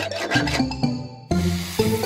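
Cartoon hand-saw sound effect: rasping saw strokes over background music.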